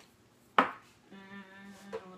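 A single sharp knock of something hard in the kitchen about half a second in, followed by a person's voice holding one steady note for about a second.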